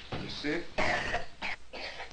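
A young child coughing, about four short rough coughs in quick succession.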